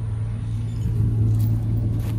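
A motor vehicle's engine running steadily, a constant low hum with no change in speed.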